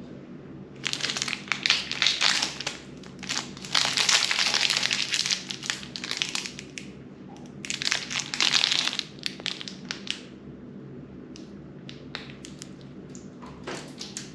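Plastic wrapper of a Snickers bar being torn open and peeled back by hand, crinkling in three loud bursts over about nine seconds, then only a few faint rustles near the end.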